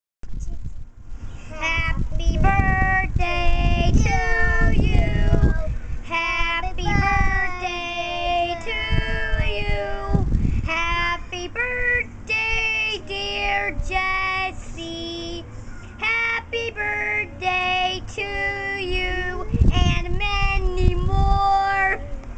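A young child singing a song unaccompanied, in short phrases of held, steady notes.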